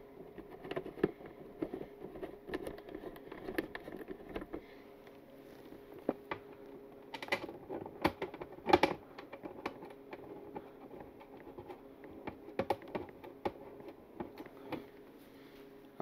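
Scattered light clicks and taps of screws being started into the front fairing of a Harley-Davidson Low Rider ST and the fairing being shifted into line, with a few louder knocks about seven and nine seconds in.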